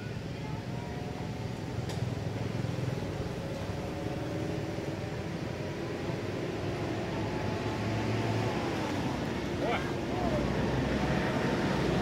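A steady low rumble, like a motor vehicle running nearby, with faint indistinct voices over it. A short high squeak comes about ten seconds in.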